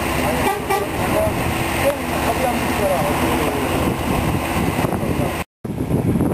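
Roadside traffic noise with vehicle engines running and people talking. The sound cuts out suddenly for a split second near the end.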